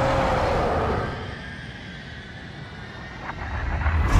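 Action-film sound effects of a leap through the air: a loud rushing whoosh with a falling tone in the first second, then a lower rumble that swells again near the end.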